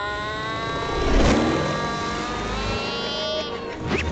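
Cartoon sound effects: one long held pitched tone that slowly rises, with a loud crash-like burst about a second in and a quick swooping glide near the end.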